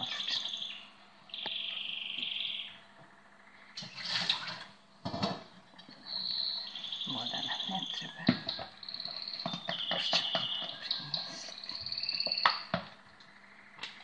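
A songbird singing repeatedly in high chirps and short trills, each phrase about a second long. A few knocks and clinks come from a metal fork and plastic bowl as yeast dough is stirred.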